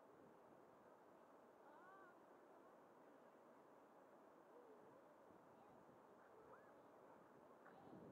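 Near silence: faint outdoor hiss with a few faint, distant gliding calls.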